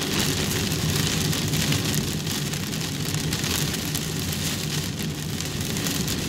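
Rain falling steadily on a car's roof and windshield, heard inside the cabin, over the low drone of the car driving on a wet road.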